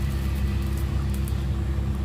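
Steady low machine hum with a faint sizzle from a folded dosa cooking in a cast-iron skillet.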